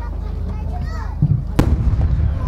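Aerial firework shells going off: a low thump a little past one second in, then a sharp, loud bang with a rumbling tail, over spectators' chatter.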